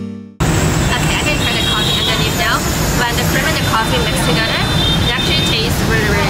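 Steady city street din of traffic with a woman talking over it.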